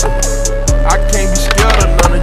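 Hip hop music with a steady beat, over the sound of a skateboard rolling on concrete.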